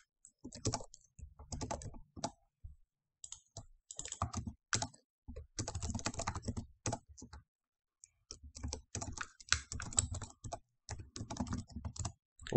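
Typing on a computer keyboard: quick runs of keystrokes with brief pauses about three seconds in and again about eight seconds in.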